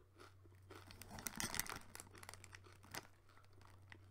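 Faint crinkling of a muesli packet being handled, loudest between about one and two seconds in, with a single click near the end.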